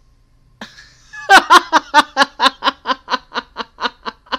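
A woman laughing hard: a fast, even run of loud 'ha' bursts, about five a second, starting after a breathy onset a little over a second in.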